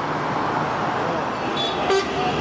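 Steady city traffic noise, an even rush of passing vehicles, with a brief faint high tone near the end.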